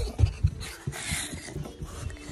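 Handheld phone being swung about close to the microphone: a few low bumps near the start, then a breathy, rustling hiss about halfway through.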